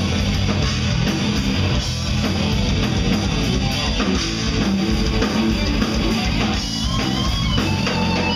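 Heavy metal band playing live: distorted electric guitar over a drum kit, recorded from the audience. A high, wavering guitar line comes in near the end.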